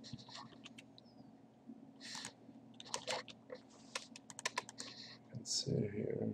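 Computer keyboard typing and mouse clicking: a run of quick, irregular clicks, with a steady low hum underneath.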